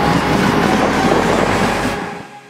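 Street traffic on a busy city road: cars and buses passing as a steady, dense wash of engine and tyre noise.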